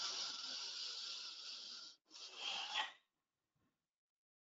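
A person breathing audibly while holding a yoga pose: one long, hissy breath of about two seconds, then a shorter breath after a brief pause.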